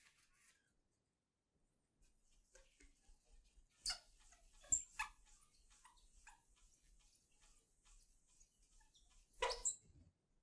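A paper towel wiping across a painting palette, clearing off mixed paint. It is faint rubbing with a few sharp squeaks and knocks, starting about two seconds in, with a louder rub near the end.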